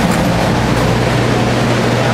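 Restoration drying equipment running: carpet-drying air movers and a low-grain (LGR) dehumidifier, a loud, steady rush of air with a steady low hum that comes in just after the start.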